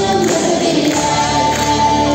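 Large choir singing over loud instrumental accompaniment, with a long held note starting about halfway through.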